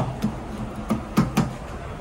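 Lift car push buttons being pressed: about five short sharp clicks over a second and a half, over a low steady hum.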